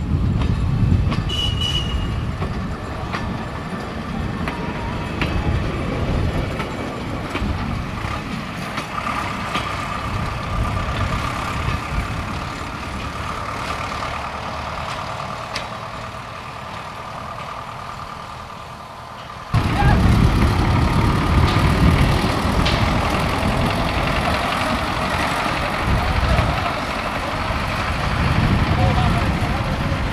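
Engine of a bus converted to run on rails, running as the railbus moves off along the track and slowly fades. About two-thirds through there is an abrupt jump to louder engine noise from another rail vehicle carrying people, with voices.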